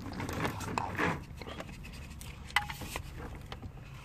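Coiled stainless-steel braided fuel lines being moved by hand over carpet and plastic trim: faint rustling and scraping, with a sharp click about two and a half seconds in.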